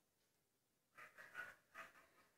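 Near silence, with a few faint, brief sounds in the second half.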